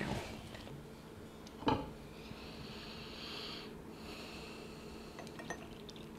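Quiet handling of porcelain and glass teaware on a bamboo tea tray: faint clinks at first, one light knock about two seconds in, then a faint soft hiss for a couple of seconds.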